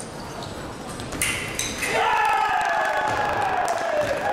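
An electronic fencing scoring machine signals a touch about a second in: the winning 15th touch of a foil bout. It is followed by a long, loud shout that falls steadily in pitch.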